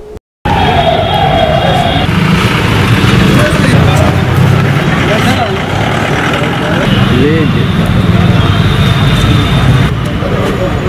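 A motor vehicle's engine running close by, a steady low rumble with road noise, under faint indistinct voices.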